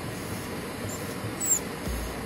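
Steady car interior noise, an even hiss of engine, road and air, with a brief faint high squeak about one and a half seconds in.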